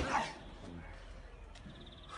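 A single sharp thump right at the start as a person lands a jump on a concrete slab, followed by a short, faint vocal sound.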